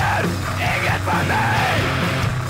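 Crust punk band recording playing: a dense, loud wall of guitars and drums under hoarse shouted vocals.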